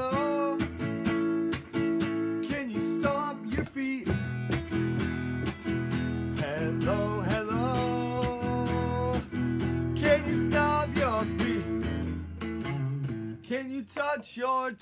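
Electric guitar played without singing: steady rhythmic strumming with some held, bending notes over it.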